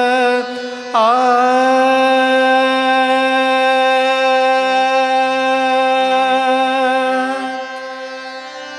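Odissi classical song: a singer holds one long note with a slight waver, starting about a second in and fading near the end. Beneath it run a steady drone and short, soft low instrumental notes.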